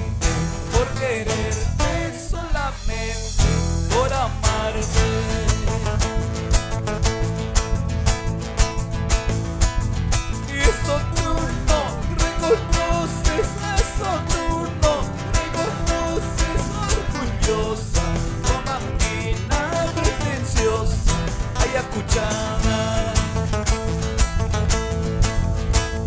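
Live Andean carnaval music from a small band: nylon-string guitars strumming and picking over electric bass with a steady beat, and a man singing into a microphone.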